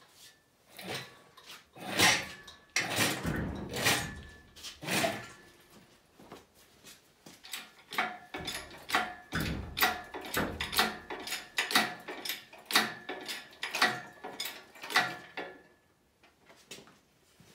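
Metal clanks and knocks from an engine hoist and its lifting chain as a Land Rover 2.25 diesel engine is raised out of its bay. The heavier clunks come in the first half, then a run of even clicks, about two a second.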